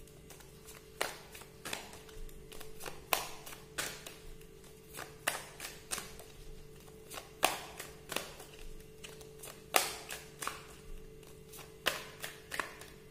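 A tarot deck being shuffled by hand: sharp, irregular card clicks and slaps, a few a second. Quiet background music holds a steady drone underneath.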